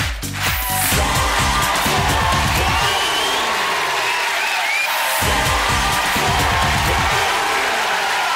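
Television show's theme music with a steady bass beat, which drops out for a moment about halfway, over crowd cheering and applause.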